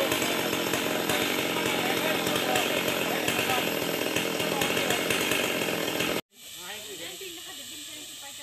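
Chainsaw running steadily under people's voices, cut off suddenly about six seconds in, after which only quieter voices remain.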